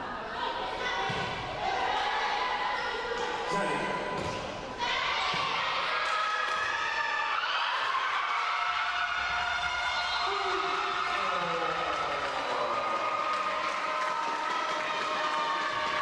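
Indoor volleyball rally with the ball struck and hitting the court, amid steady shouting from players and spectators, echoing in a large hall.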